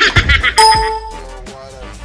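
Editing sound effect: a short, busy burst, then a bright ding about half a second in that rings briefly and fades.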